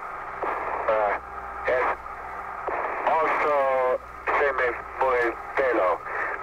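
Speech over a 1962 space-to-ground radio link: a man's voice, narrow and cut off in the highs, with steady hiss and a low hum beneath it.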